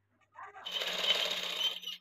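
Sewing machine running a short run of stitches, about a second long, after a few light taps, stitching down the blouse's folded-under neckline piping.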